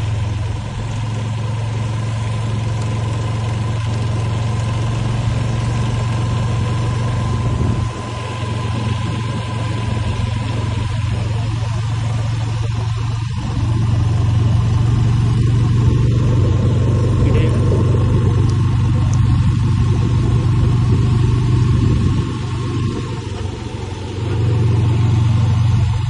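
A motor vehicle's engine and road noise while driving: a steady low drone that gets louder about halfway through and dips briefly a few seconds before the end, with a faint steady whine above it.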